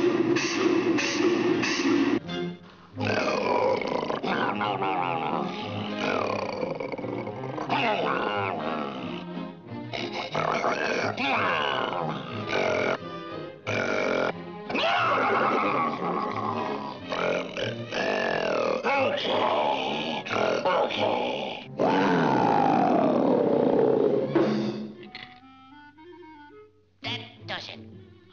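Orchestral cartoon score with quick runs and sliding glides, over a cartoon lion's growls and grunts. The music falls away to quiet near the end.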